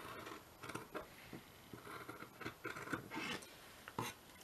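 Large fabric scissors cutting along the edge of cotton fabric backed with sticker paper: a run of quiet, irregular snips and scrapes.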